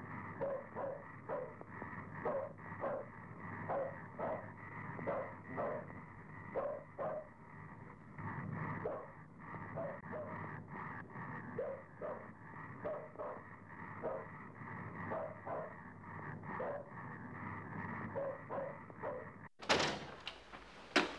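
Dog barking repeatedly in short volleys, often two or three barks close together, over a steady background hum; the barking cuts off suddenly near the end.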